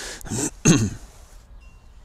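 A man clearing his throat once, about half a second to a second in.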